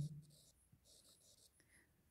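Near silence, with faint scratching of a stylus writing on a tablet screen.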